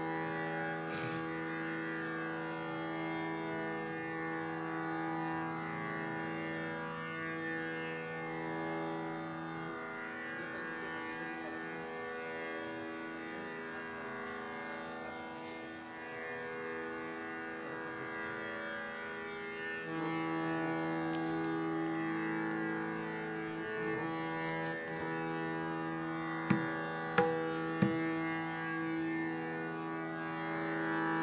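Tanpura drone sounding steadily, its strings ringing with many overtones and no singing over it. Near the end come three sharp knocks about half a second apart, louder than the drone.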